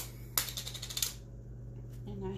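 A sharp click, then a rapid rattle of light clicks lasting under a second, from small hard objects being handled on the tabletop.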